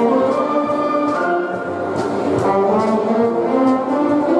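School concert band playing a piece of music, with flutes, saxophones and trombones sounding held chords that shift every second or so.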